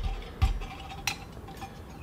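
A metal pot set down on a titanium cross stand over an alcohol stove. It lands with a low knock, knocks again about half a second later, and gives a faint sharp click about a second in.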